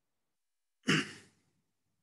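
A short sigh: one audible breath out, about a second in, fading within half a second.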